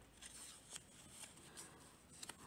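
Near silence, with a few faint rustles of fabric and a paper template strip being handled and folded by hand.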